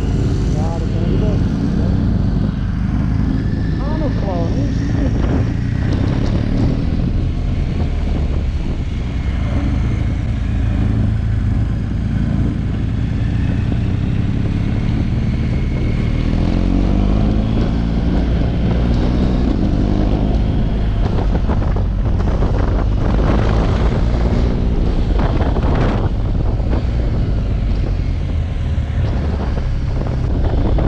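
Large twin-cylinder adventure motorcycle's engine running under way with wind rush, the engine note rising and falling with the throttle through the bends.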